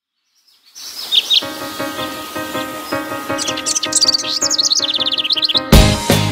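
Birds chirping over the quiet intro of a song, with a soft, steady, pulsing instrumental pattern underneath from about a second and a half in; the full band comes in with a loud hit near the end.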